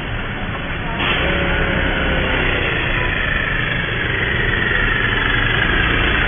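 Road traffic noise with vehicle engines running, getting louder and brighter about a second in.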